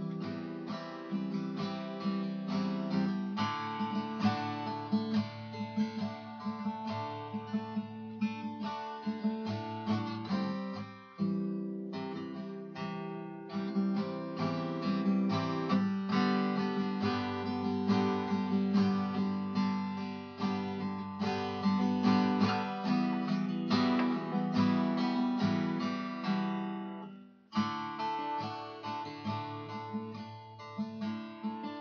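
Acoustic guitar played solo, with no singing, strummed and picked chords running on steadily. There are brief breaks about eleven seconds in and again near the end.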